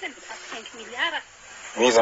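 Speech: a person talking, louder near the end.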